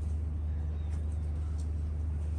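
A steady low hum, with a few faint light clicks around the middle.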